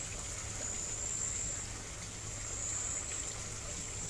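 Quiet outdoor background: a steady, high-pitched insect drone over an even low hiss.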